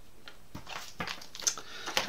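A few faint, sharp clicks and taps as a black Delrin plastic boom mount is handled and set into place at the nose of a carbon fibre frame plate.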